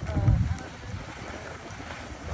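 Wind rushing over the microphone and a rumbling hiss of sliding over packed, tracked snow while moving downhill, louder for a moment in the first half second.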